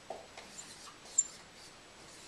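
Dry-erase marker squeaking and scratching on a whiteboard as numbers are written, with one short, sharp, high squeak just past the middle.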